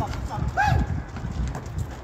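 Pickup basketball on a concrete court: repeated thuds of the ball and players' feet, with a short shout from a player a little before the middle.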